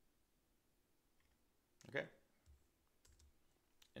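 Near silence with a few faint, scattered clicks of a computer keyboard and mouse; a single spoken word about halfway through.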